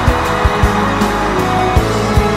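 Instrumental passage of a Chinese pop song with no singing: sustained chords over a steady drum beat.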